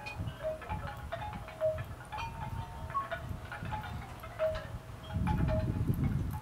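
Wind chimes ringing, with short clear tones at several pitches sounding at irregular moments, over a low rumble that grows louder near the end.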